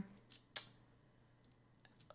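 Near silence with one short, sharp click about half a second in.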